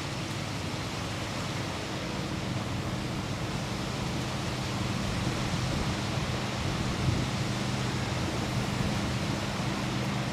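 Steady rushing of wind and lake water at the shore, with the low, even hum of a motorboat engine out on the lake coming up about two seconds in and growing slightly louder.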